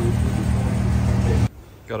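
A loud, steady low machine hum with rushing noise. It cuts off suddenly about one and a half seconds in, and a man's voice begins near the end.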